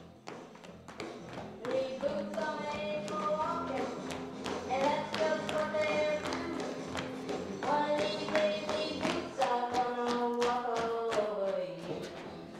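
Music: voices singing a tune in held, sliding notes over a steady beat of sharp taps. It starts quietly and builds about two seconds in.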